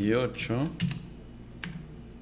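A few separate keystrokes on a computer keyboard, typing a short line of code. A man's voice sounds briefly over the first second.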